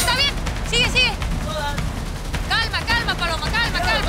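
Repeated short, high-pitched shouted calls of encouragement to a competitor, over a steady low background rumble.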